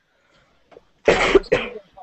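A person coughing twice in quick succession about a second in, heard through a video-call connection.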